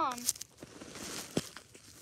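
Plastic toy dog figurine being walked across granular snow, crunching and crackling in short scuffs, with one sharper click about one and a half seconds in.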